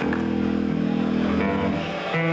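Distorted electric guitar and bass sustaining a loud droning chord through the amplifiers, the notes held steady and shifting about two-thirds of a second in, heard through a camcorder microphone in the audience.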